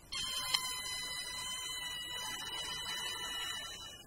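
A steady, high, buzzer-like tone with overtones. It starts suddenly, has one click about half a second in, and cuts off shortly before the end.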